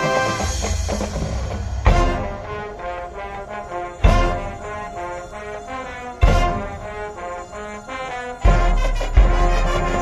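High school marching band playing, its brass holding sustained chords. Loud low hits punctuate the chords about every two seconds, with two close together near the end.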